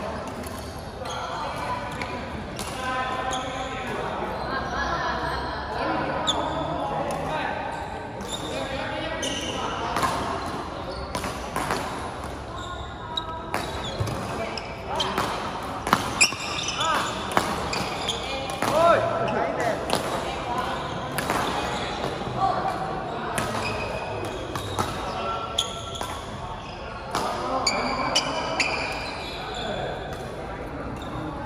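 Badminton doubles rally in a large, echoing hall: sharp racket-on-shuttlecock hits and shoes squeaking on the court floor, with a busy stretch of exchanges about halfway through. A steady murmur of voices from other courts runs underneath.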